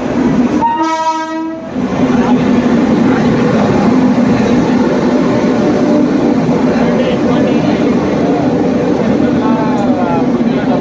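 A train horn sounds once for about a second, a single steady tone. Then comes the loud, steady drone and rumble of a train running close by.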